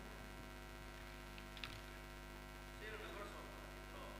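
Low, steady electrical mains hum from the stage sound system, with a couple of faint clicks about a second and a half in.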